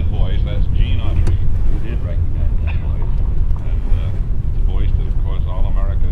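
A car's engine and road noise as a steady low rumble, with an old-time radio broadcast of talking voices over it, thin and indistinct.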